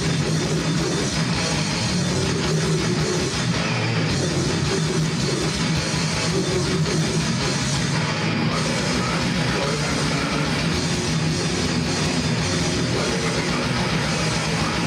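A heavy rock band playing live and loud, electric guitar and drum kit going without a break.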